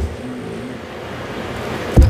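Steady background rumble with no speech, ending in a sharp tap as a tarot card or the deck is set down on the table.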